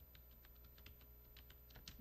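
A quick, irregular run of faint light clicks, about a dozen, with a slightly stronger one near the end.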